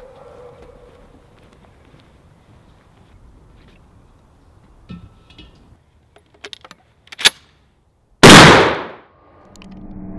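A 12-gauge shotgun fires a single lead slug at an old propane tank, one very loud shot that dies away over most of a second. Before it come a few metallic clicks and a sharp click as the shotgun is handled and readied, and a rising noise starts just after the shot.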